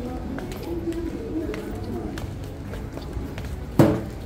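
Shop ambience: background music and indistinct voices, with a single loud knock shortly before the end.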